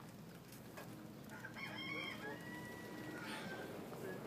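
A rooster crowing once, about a second and a half in, ending in a drawn-out held note.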